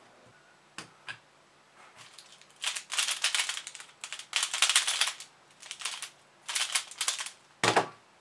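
X-Man Bell magnetic pyraminx being turned fast by hand: rapid runs of plastic clicking and clacking in several quick bursts with short pauses between them, ending in a single sharp knock near the end.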